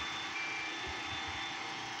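Steady background noise with two brief, faint high-pitched tones, one at the very start and one about a third of a second in.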